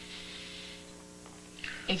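A steady low hum of several held tones, with no other events, during a pause in the dialogue; a woman's voice starts again right at the end.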